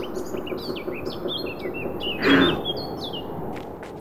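Small birds chirping in many quick, high chirps, with one short, louder rough sound a little over two seconds in.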